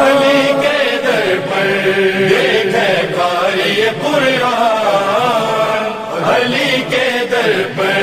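Devotional vocal chanting: voices carrying a slow melodic chant with long, wavering held notes, the background chorus of a manqabat recitation.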